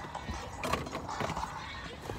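Rustling with a few sharp knocks, close to the microphone.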